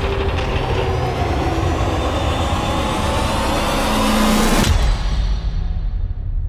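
Movie-trailer sound design: a dense, noisy swell with climbing whines that builds for about four and a half seconds, then cuts off suddenly into a deep rumble.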